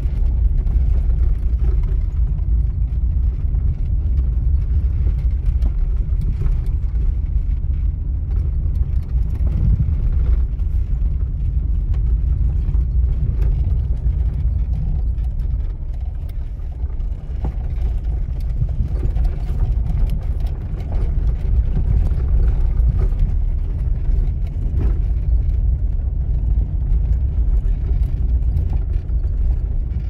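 Inside a Lada Samara 1500 driving over a rocky, loose-stone dirt track: a steady low rumble of engine and tyres, broken by many small clicks and knocks from stones and the rough surface.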